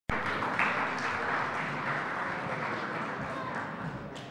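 Audience applauding, starting at once and slowly dying away.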